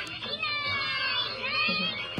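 A children's sound picture book playing a high-pitched sung voice through its small speaker, the pitch wavering up and down.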